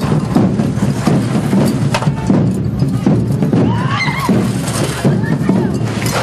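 Correfoc drum group playing a steady, driving beat, with crowd voices mixed in. A brief high wavering cry rises over it about four seconds in.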